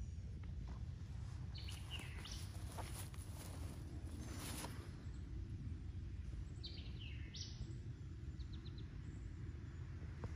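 Outdoor ambience: a steady low rumble with several short, high bird chirps scattered through, including a quick run of little notes near the end.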